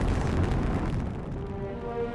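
Saturn V rocket launch: the first stage's five F-1 engines firing at the pad, a deep, continuous rumble. Orchestral music comes in over it about two-thirds of the way through.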